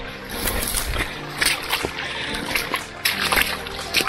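Footsteps on wet stones and in shallow water at the water's edge, with irregular splashing and crunching, over faint background music.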